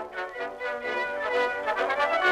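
Brass fanfare music sting: several brass instruments playing held chords that grow louder.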